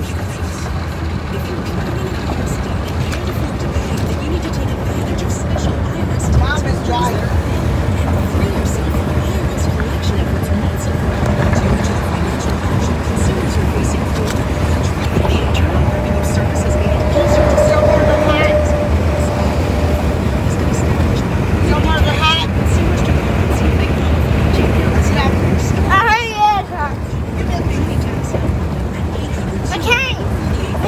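Steady rumble of a car on the move, heard from inside the cabin, with a voice faintly under it in places.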